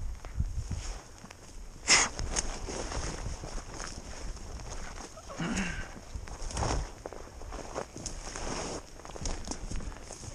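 Footsteps and rustling as someone walks through low heath and scrub, with irregular knocks and a sharp louder knock about two seconds in. A short vocal sound comes about five and a half seconds in.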